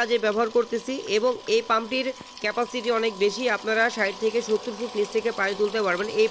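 A man speaking over the steady high whine of a 175-watt 12 V DC booster pump running as it pumps water.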